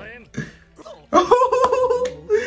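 A man laughing loudly. The first second is quieter and broken, then a held, pulsing laugh starts about a second in.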